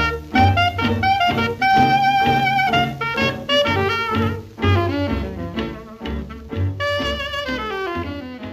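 Background music: an upbeat jazz tune with horns and a bass line, instrumental with no singing in this stretch.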